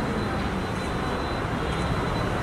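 Steady low rumble of outdoor street noise, with faint background voices.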